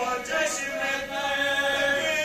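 Male voices chanting a marsiya (Urdu elegy) without instruments: a lead reciter sings into a microphone while several men sing along with him, holding long, slowly gliding notes.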